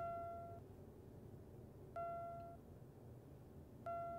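Electronic beep, a single steady tone about half a second long, sounding three times at about two-second intervals over a low background hum.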